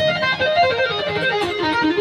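Electric guitar lead playing a fast run of single notes that steps mostly downward in pitch.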